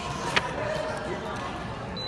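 Distant voices murmuring, with one sharp knock about a third of a second in.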